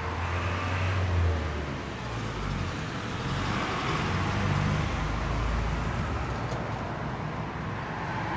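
Road vehicle noise: a steady low engine and road rumble, a little louder about a second in.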